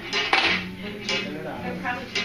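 Beads of a children's bead-maze toy clacking as they are pushed along the wire loops: a quick cluster of clacks at the start, then single clacks about a second in and near the end.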